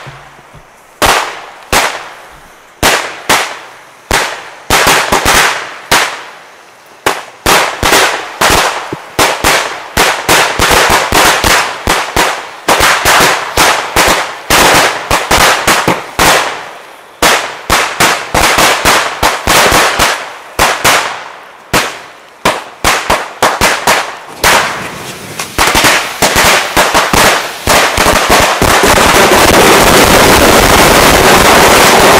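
Small Chinese D-Böller firecrackers going off in an irregular run of sharp bangs, single and spaced at first, then in ever denser clusters. Near the end they merge into one continuous crackle as the stack of about 800 goes off at once.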